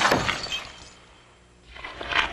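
Glass shattering with a crash, a sharp strike followed by a smaller one about half a second later, dying away over about a second and a half.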